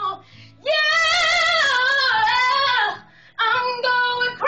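A woman singing long held notes with a wavering, vibrato-like pitch: one phrase of about two seconds after a short break, then a brief pause and a new phrase starting near the end.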